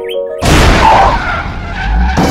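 A car skidding and crashing: a sudden loud burst of noise about half a second in that cuts off soft piano notes and a cockatiel's chirps.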